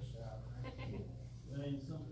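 A woman laughing in two spells, over a steady low hum.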